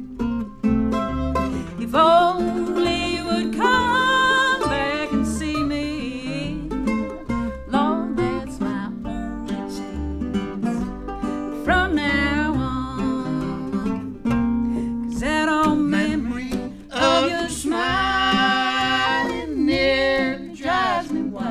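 Old-time acoustic string band music: acoustic guitar, mandolin and upright bass playing on steadily, with a wavering melody line above a continuous bass.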